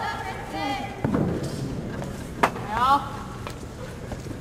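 A few sharp stamps and slaps from a wushu broadsword routine, the sharpest about two and a half seconds in, with short shouted calls around them.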